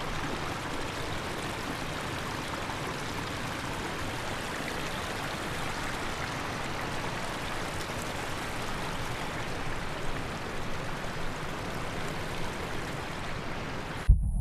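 River water rushing steadily over rocks, an even noise with no pitch and no break.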